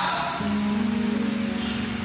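Background keyboard music: a low note entering about half a second in and held, with a fast wavering tremolo.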